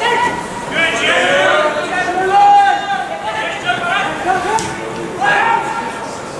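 Players shouting calls to each other across a football pitch during play, with one long drawn-out shout about halfway through.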